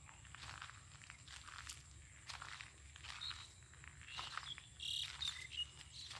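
Faint, steady high-pitched drone of crickets and other insects, with soft irregular crunches of footsteps on dry ploughed clods. A few short chirps come through from about the middle to near the end.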